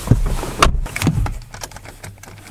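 Three or so knocks and handling thumps about half a second apart inside a car cabin, dying down in the last half second.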